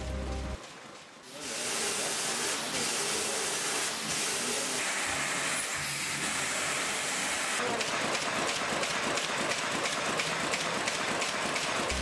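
Automatic envelope folding and gluing machine running at high speed, a steady rapid mechanical clatter with a hiss, as it folds and glues cheque-size paper envelopes. The sound sets in about a second and a half in and holds steady.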